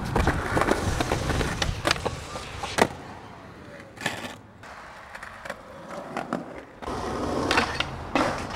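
Skateboard wheels rolling over a concrete sidewalk, with clicks and knocks from the board and one loud sharp knock about three seconds in. It goes quieter for a few seconds, then the rolling starts again near the end.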